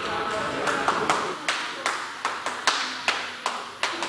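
One person clapping hands sharply and repeatedly, about a dozen claps at roughly two to three a second.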